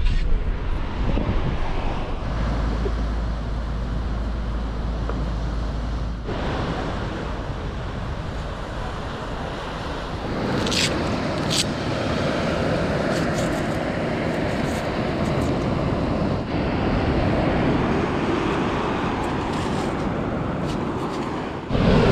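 Car cabin noise with a low steady rumble at first, giving way after about ten seconds to wind on the microphone and surf breaking on the shore, with two sharp clicks.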